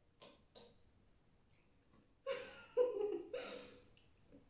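Two soft brief rustles near the start, then a little after two seconds a person's voice in three short wordless bursts.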